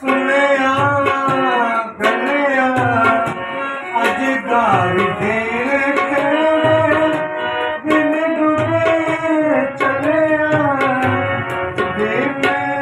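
A man singing a folk song with long, held notes and a long sliding run about four seconds in, accompanied by hand-drum strokes in a steady rhythm.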